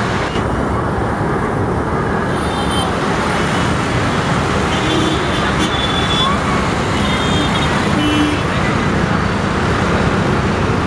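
Steady traffic noise, with a few brief faint high tones over it.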